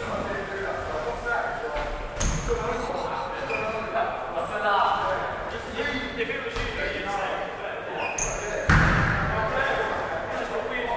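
BMX bikes riding and landing on a concrete bowl in a large echoing hall: scattered knocks and thuds, with one loud bang near the end.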